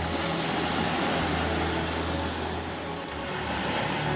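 Small waves breaking and washing over the shoreline as a steady noisy rush, with background music underneath.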